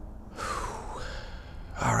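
A hungry house cat meowing: one drawn-out call of about a second that dips and rises in pitch.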